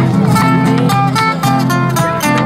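Two acoustic guitars playing an instrumental passage of an Argentine huella, strummed and picked, with a bombo legüero drum struck with sticks keeping the beat.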